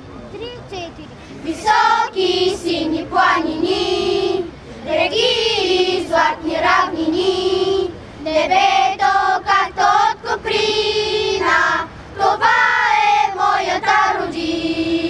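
A group of children singing a song together in unison, in sustained phrases with short breaths between them.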